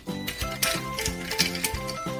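Light background music with a quick run of short notes, over small plastic clicks from a Bumblebee Transformers toy's parts being moved by hand.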